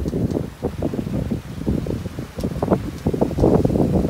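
Wind buffeting the microphone aboard a sailboat under sail with its engine off: a low, uneven rumble that rises and falls in gusts.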